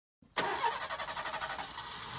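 A sudden, rapidly repeating mechanical rattle, about ten pulses a second, starting about a third of a second in.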